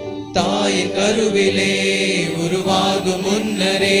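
Hymn singing with instrumental accompaniment: voices enter abruptly about a third of a second in and carry a chant-like sung line over sustained accompanying notes.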